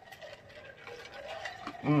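A person drinking in gulps from a glass jar, close to the microphone: quiet swallowing sounds, growing a little louder toward the end.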